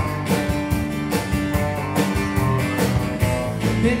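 Live band playing an instrumental passage: strummed acoustic guitar, electric lead guitar, bass guitar and drums keeping a steady beat. The lead vocal comes back in at the very end.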